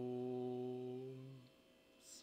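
A solo male voice singing Gregorian chant, holding one long low note that fades out about one and a half seconds in.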